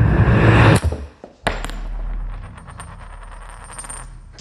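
Horror trailer sound design. A loud noisy hit cuts off about a second in, and a sharp single hit comes about a second and a half in. After that a low rumbling drone runs under a thin, high, steady ringing tone.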